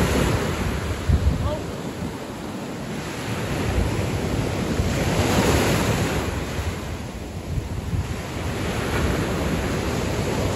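Small surf breaking and washing up the beach, swelling and easing, with one wash loudest around the middle. Wind buffets the microphone with low rumbling gusts about a second in.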